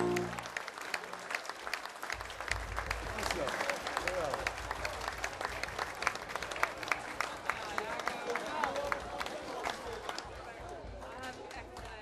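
A small crowd clapping, the claps scattered and uneven, with people talking among them. A held musical chord cuts off just at the start.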